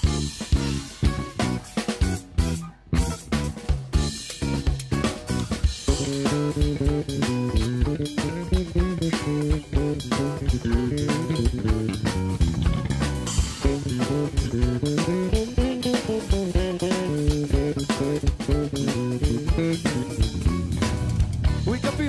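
Instrumental section of a song played by a drums, bass guitar and guitar trio: a drum kit keeps a busy beat under a moving electric bass line, with a couple of short stops in the first three seconds before the groove runs on.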